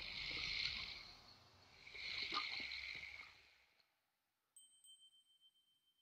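Faint sound effects from an anime film soundtrack: two hissing whooshes in the first three seconds or so, then a high chime struck about four and a half seconds in, ringing out and fading.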